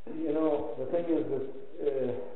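A man's voice speaking in a few short phrases.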